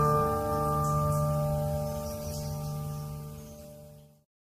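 Final chord of an acoustic guitar piece ringing out, several held notes fading steadily away and then cutting off into silence at the end.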